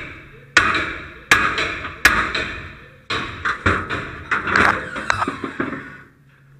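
Hard metal-on-metal blows of a striking tool on a halligan bar driven into the jamb of a steel forcible-entry training door: three heavy strikes about three quarters of a second apart, then a quicker run of bangs and rattles as the door is forced open.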